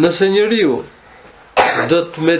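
A man lecturing: one short spoken phrase, a pause, then a sharp breathy onset about one and a half seconds in that runs straight into more speech.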